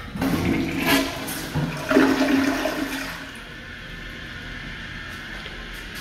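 Tank toilet flushing: a loud rush of water for about three seconds, then a quieter, steady run of water.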